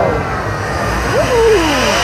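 Arena show soundtrack over the PA: the music breaks off and sliding tones play in its place, one sweeping steeply downward near the end.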